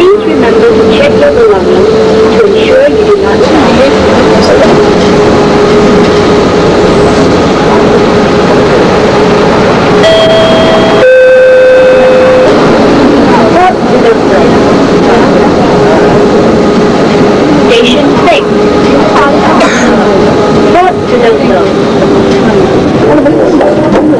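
Running noise inside a moving vehicle with a steady hum, and a two-note descending chime about ten seconds in, each note lasting about a second.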